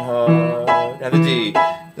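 Upright piano playing a reggae chord pattern, alternating a low left-hand root note with a right-hand three-note chord, about two strikes a second.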